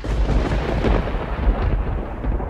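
A deep, thunder-like rumble sound effect that starts abruptly and stays heavy in the bass.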